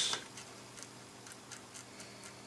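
Faint scratching and ticking of a trimmed brush's bristles scrubbing surgical spirit over the bare soldering pads of a circuit board, cleaning off flux residue.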